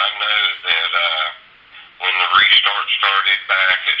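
A man talking over a telephone line, thin and cut off in the highs, with a short pause in the middle.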